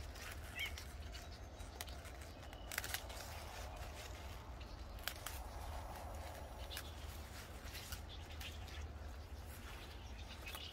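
Garden snips cutting rainbow chard stems: several sharp snips, two close together about three seconds in and another about five seconds in, with leaves rustling. A bird chirps briefly near the start.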